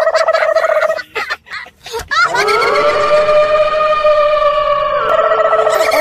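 A person's long, wailing cry held on one pitch, siren-like. It breaks off after about a second, then comes again with a rising start and is held for several seconds.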